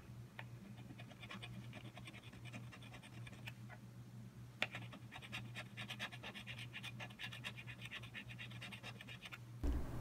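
A coin scratching the coating off a paper scratch-lottery ticket in quick, rapid strokes, faint, over a low steady hum. A sharp tick comes about four and a half seconds in, then a longer, denser run of strokes stops just before the end.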